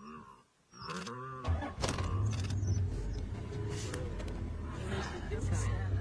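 A vehicle engine running steadily close by, coming on suddenly about one and a half seconds in, after a brief voice.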